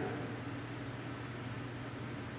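Steady room tone: an even hiss with a low hum underneath, and no distinct events.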